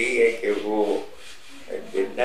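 A person talking, with a short pause about a second in, over a soft rubbing noise.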